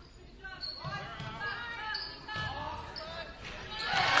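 A basketball bouncing on a hardwood gym floor, a few dull thumps, under the voices of players and spectators in the gym.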